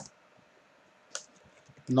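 Computer keyboard keystrokes. A sharp key click comes right at the start and another about a second later, followed by a few faint key taps.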